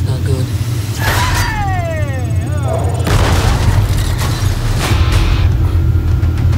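Film trailer sound design: a steady deep rumble under three heavy booms about two seconds apart, with a long falling tone after the first boom.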